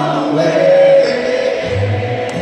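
Church congregation singing a gospel hymn a cappella, led by a man's voice on a microphone, with a held note about half a second to a second in.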